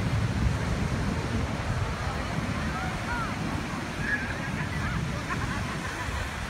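Beach ambience: a steady rumble of wind on the microphone and breaking surf, with faint distant voices and calls from people on the beach.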